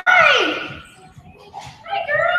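A dog whining in long, high drawn-out cries: one cry falls in pitch and fades in the first half second, and after a short lull another begins near the end.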